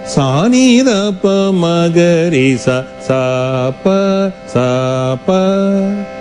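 A male Carnatic vocalist singing swara syllables (sa ri ga ma pa da ni sa) as a practice exercise. Each syllable is held on a steady note and the notes step up and down, with sliding ornaments in the first second and short breaks between phrases. A faint steady tone continues underneath.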